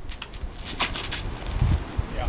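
A quick cluster of short scuffs and scrapes, loudest about a second in, as a disc golfer throws a drive from a concrete tee pad, over a low uneven rumble on the microphone.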